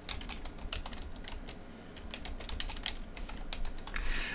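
Typing on a computer keyboard: a quick, unevenly spaced run of key clicks as a short phrase is typed.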